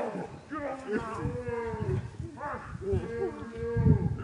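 Human voices calling out in long, drawn-out wordless shouts or cries, with shorter vocal sounds between them.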